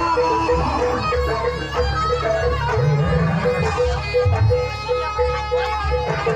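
Live jaranan accompaniment from a traditional East Javanese percussion ensemble. Drums sound under a reedy wind melody, and a pitched metallic note repeats steadily about twice a second.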